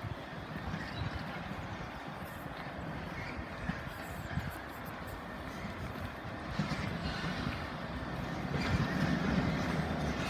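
A locomotive-hauled train approaching in the distance, its low rumble slowly getting louder over the last few seconds.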